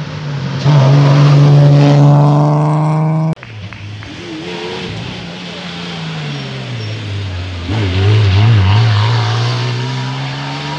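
Rally car engines run hard in two separate shots. First a car is held at high, steady revs as it approaches. After an abrupt cut about three and a half seconds in, a classic Porsche 911's engine note falls as it lifts off and slows, then climbs again near the end as it accelerates away.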